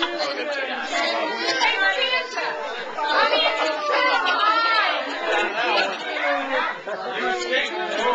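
Overlapping chatter of a group of people talking at once in a crowded room, with no single voice standing out.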